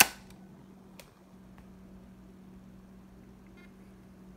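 A laptop DVD drive's tray shutting with one sharp click, then only a couple of faint clicks over a steady low hum. No disc spin-up is heard: the drive is not spinning the disc.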